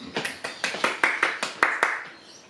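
A quick, slightly irregular run of about ten sharp hand claps, each one short.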